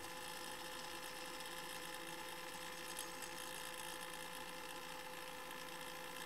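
Faint steady hiss with a thin, steady hum-like tone underneath, unchanging throughout.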